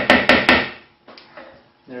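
A spoon knocking sharply against the rim of a mixing bowl in a quick run of about five taps a second, knocking softened butter off into the cookie mixture.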